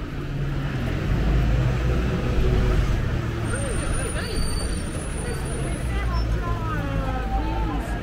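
Busy city street: a low, steady rumble of motor traffic, louder a second or two in, with snatches of passers-by talking, mostly in the second half. A brief thin high whine sounds around the middle.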